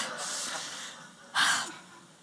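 A woman's strained, noisy breathing, then a short sharp gasp about a second and a half in, the effort sounds of someone straining at a tightly stuck jar lid.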